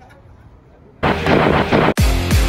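A loud explosion-like sound effect bursts in about a second in and lasts about a second, then cuts off sharply: the blast that opens a wrestling show's intro sequence. Before it there is only faint background hiss.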